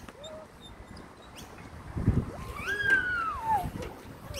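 A young child's high, drawn-out vocal cry that rises and then falls, about three seconds in, just after a few dull knocks as he climbs onto the play frame.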